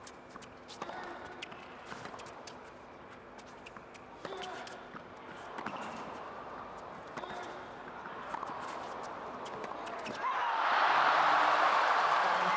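Tennis ball struck back and forth with rackets during a rally, a series of sharp pocks over a quiet indoor arena. About ten seconds in, the crowd breaks into loud cheering and applause as the point is won.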